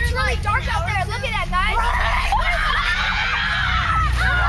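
Several boys' voices talking and calling out over each other, turning about two seconds in into overlapping shouting, over a low rumble.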